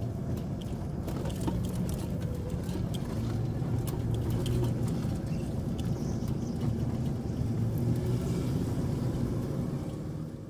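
Van driving slowly, heard from inside the cab: a steady low engine and tyre rumble with scattered small clicks and crackles as it rolls over gravel.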